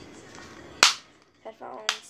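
Two sharp plastic clicks about a second apart as a pair of headphones is handled and unfolded.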